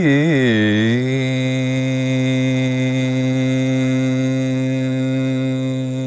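Male Carnatic classical voice singing unaccompanied: a quick oscillating gamaka ornament in the first second, then one long steady held note.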